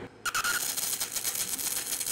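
A MIG arc welding aluminum with 1/16-inch wire on a push-pull gun, at a wire feed speed of about 600 with about 22.5 volts. The arc strikes just after the start with a short high tone, then settles into a steady, fast crackle and hiss. The setting runs too much amperage: the weld burns straight through the back of the plate.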